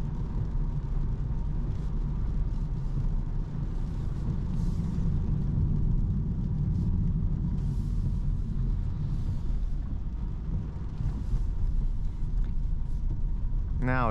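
Cabin noise of a 2024 Opel Corsa with an 8-speed automatic, driving on a wet road: a steady low rumble of engine and tyres on wet tarmac.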